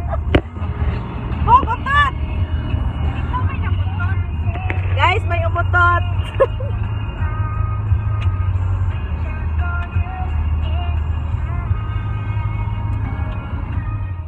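Steady low rumble of a car's engine and tyres heard from inside the cabin while driving. In the first half people laugh and call out over it, and music plays along with it.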